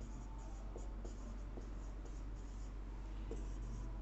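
Marker writing on a whiteboard: a run of short, faint strokes as a word is written out letter by letter.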